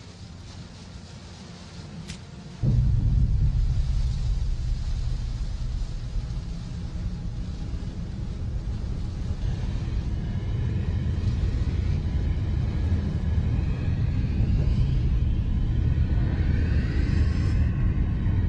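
Deep, ominous low rumbling drone that comes in abruptly about two and a half seconds in and holds on steadily. Faint high wavering tones rise above it toward the end, and a small click comes just before the drone begins.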